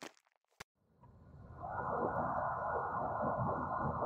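A second of near silence with a single click, then steady road noise inside a moving coach fades in over about a second and holds as a low, even rumble.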